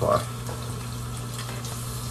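Bathroom tap left running into the sink: a steady, even rush of water with a low hum beneath it.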